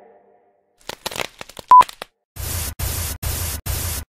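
Electronic TV-glitch sound effect: crackling clicks, a short loud beep just before the two-second mark, then four chopped bursts of TV static.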